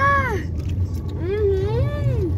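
Steady low hum of a running car heard from inside the cabin, with a child's drawn-out voice rising and falling twice.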